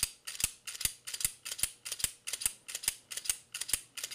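Rapid, even mechanical clicking, about four sharp clicks a second, like a ticking or ratcheting mechanism.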